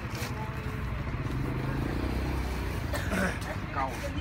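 A motor vehicle engine running with a steady low drone that fades out about two thirds of the way in. There is a brief rustle of dry herb roots being handled at the start, and voices with a laugh near the end.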